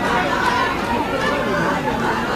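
Chatter of a crowd: several voices talking over one another at once, with no single speaker standing out.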